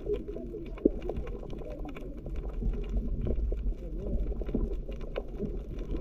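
Muffled sound through a submerged camera's housing: a steady low rumble of water, with indistinct voices faintly coming through and a scatter of faint clicks.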